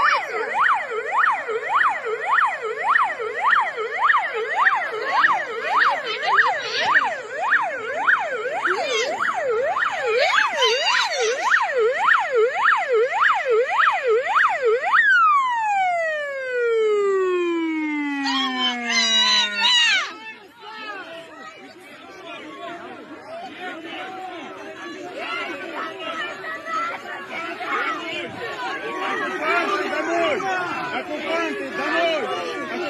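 Electronic siren of a military UAZ SUV with blue roof lights, sounding a fast yelp of about two rising-and-falling sweeps a second. About fifteen seconds in, it winds down in a long falling pitch and cuts off about twenty seconds in. After that come quieter, indistinct voices.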